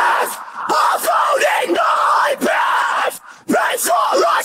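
Isolated metalcore vocal track: harsh screamed vocals in several short, loud phrases with brief breaks between them, the longest break about three seconds in.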